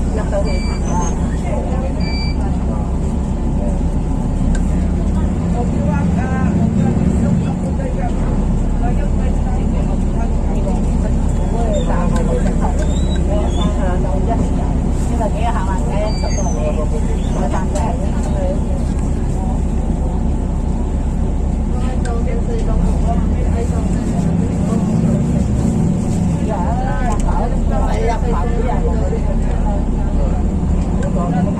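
Buses and road traffic running with a steady low engine rumble, and indistinct voices of people talking now and then.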